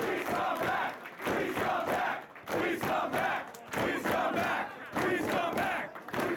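Wrestling crowd chanting in unison: a short phrase shouted together about once a second, over and over.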